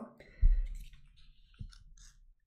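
A short, loud low thump about half a second in and a smaller one later, with faint clicks in between.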